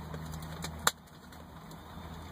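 Faint steady low hum inside a car cabin, with one sharp click a little before a second in, after which the hum is quieter.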